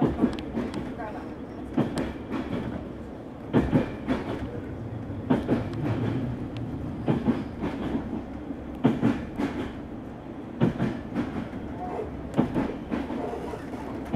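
Railway carriage wheels clattering over rail joints, a double click-clack about every second and three-quarters, over the steady rumble of the moving train.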